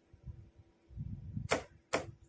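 Morse key working a signalling lamp: low dull knocks, then two sharp clicks about half a second apart near the end, as the key is pressed and released.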